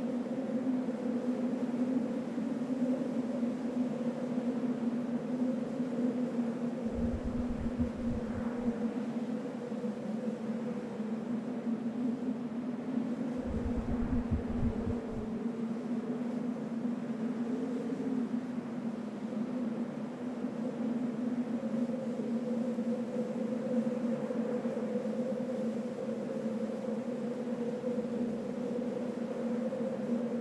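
A steady low droning hum over a hiss, holding two tones. Two deep rumbles swell under it, one about seven seconds in and one about thirteen seconds in, each lasting about two seconds.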